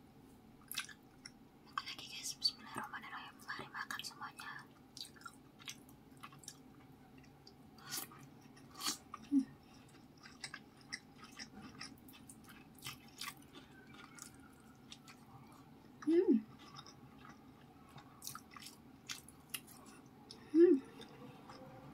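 Close-miked chewing of rice and stir-fried greens, with wet mouth clicks and smacks scattered through, denser about two to four seconds in. Two brief sounds of voice come about nine and sixteen seconds in.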